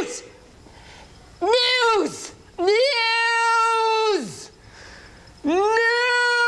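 A man's voice making long drawn-out falsetto wails rather than words: a short one about a second and a half in, a longer held one from about three seconds, and another starting near the end. Each rises at the start and then holds one high pitch.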